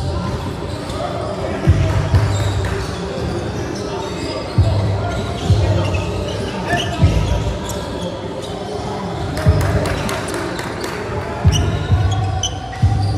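Basketball bouncing on a court, with sharp thumps at uneven intervals, about seven in all, over background voices.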